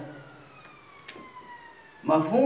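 A faint siren wail sliding slowly and steadily down in pitch, with a single light click about a second in.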